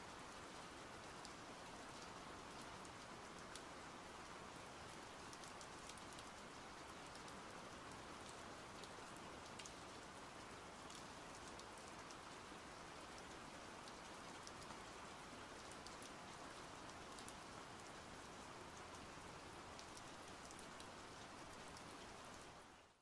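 Faint, steady rain, with scattered ticks of individual drops.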